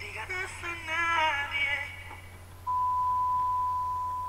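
A man singing a short phrase with a wavering, sliding pitch, unaccompanied. About two and a half seconds in, a steady high electronic beep starts and holds on one pitch.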